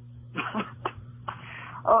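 A person coughing and clearing their throat over a telephone line, a few short rasps and then a breathy exhale, before starting to speak with an 'uh' near the end.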